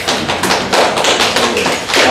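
Applause from a seated audience: a fast, irregular patter of hand claps.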